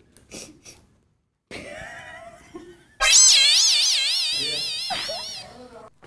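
A comic sound effect comes in suddenly about halfway through: a loud, high-pitched wobbling tone that fades away over about two seconds, after a few short vocal sounds.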